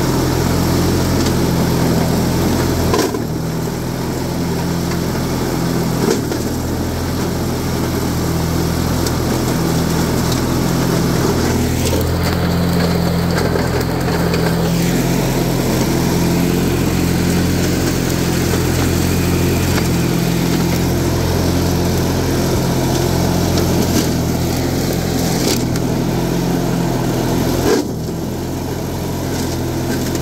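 Lawn tractor's 18-horsepower twin-cylinder engine running steadily with the mower blades engaged, cutting through weeds and brush. A few short knocks come through, with the engine note dipping slightly after them.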